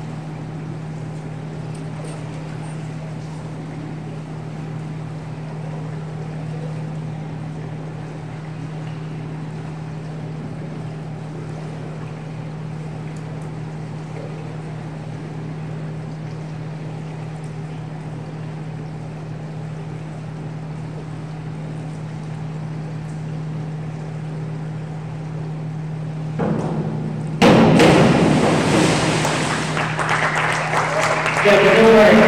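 Steady low hum of an indoor pool hall for most of the stretch; near the end a diver enters the water with a sudden loud splash, followed by clapping that fades over the last couple of seconds.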